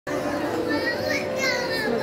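Shopping-centre crowd hubbub: children's high voices and people chattering in the background.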